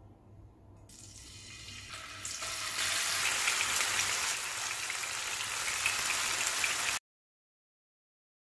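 Marinated chicken pieces sizzling as they fry in hot oil in a frying pan. The sizzle starts faint, builds over the first few seconds, holds steady, and cuts off suddenly about a second before the end.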